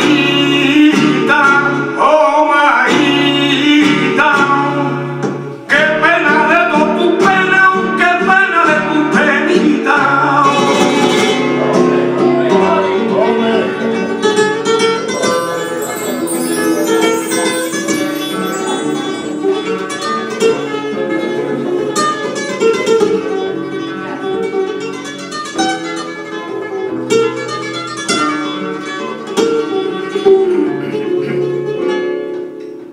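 Live flamenco music: a man sings flamenco cante over acoustic guitar. About ten seconds in, the voice drops out and the guitar plays on alone.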